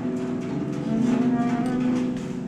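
Free-improvised acoustic jazz from woodwind, bowed cello, double bass and drums. Partway through, a long, low held note swells up and sits under the other lines.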